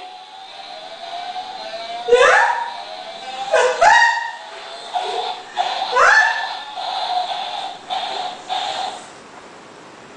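Electronic sound effects from a baby walker's dog-face toy tray: three short recorded dog barks, each rising in pitch, followed by a few seconds of steady beeping tune notes.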